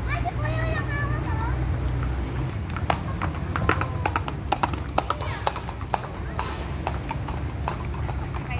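Horse hooves clip-clopping on a paved path as a pony walks past, the hoofbeats a run of sharp, irregular clicks that come in about three seconds in and fade out after six.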